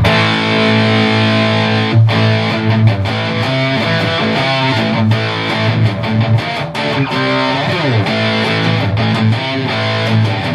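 Epiphone SG with a single bridge humbucker played through an Electro-Harmonix Metal Muff distortion pedal at low gain (about a quarter up, EQ flat), into a Randall RG100's clean channel and a Behringer 4x12 cab. Sustained chords with quite a bit of crunch, with a sliding note about eight seconds in.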